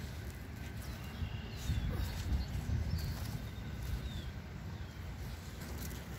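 Soft rustling and patting of garden soil being spread and pressed down by hand around a rose bush, busiest in the middle. A few faint bird chirps.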